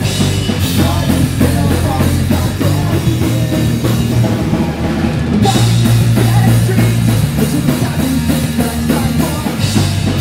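Pop-punk band playing live: drum kit, guitars and bass together. The cymbals drop back briefly and come crashing in again about five seconds in.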